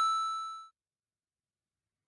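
A single bright bell-like ding, an edited-in chime sound effect, struck once and dying away in under a second.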